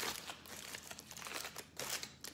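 Aluminium foil crinkling in irregular crackles as a foil-wrapped burrito is pulled open by hand, a little louder near the end.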